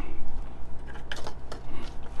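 Hands sprinkling shredded cheese into broccoli salad in a plastic tub and mixing it, making scattered small clicks and rustles from the container and the dressed vegetables.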